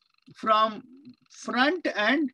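Speech only: the lecturer's voice, with one drawn-out syllable about half a second in and more words near the end.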